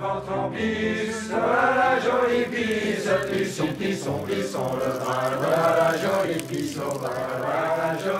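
Soundtrack music of voices chanting together in long, slowly moving sung lines, choir-like.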